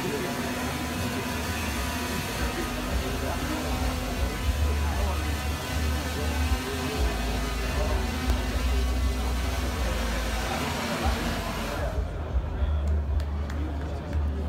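Intel Falcon 8+ drone's rotors running with a steady hiss and hum as it is set down. The rotor noise cuts off about twelve seconds in, leaving trade-hall music and chatter underneath.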